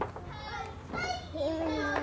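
Young children's voices: faint chatter, then a child's held, wavering vocal sound in the second half.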